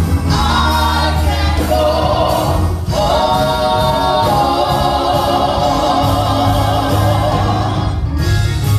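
Gospel song sung by a small group of singers at microphones, holding long notes over a steady low accompaniment, with a brief break about three seconds in.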